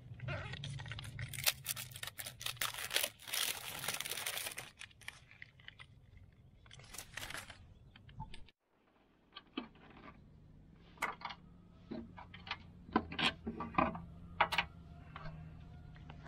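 Rustling and tearing of packaging as a new spool of MIG welding wire is unwrapped, with many small clicks. After a brief gap of silence a little past halfway come scattered sharp clicks and light knocks as the spool is handled at the welder.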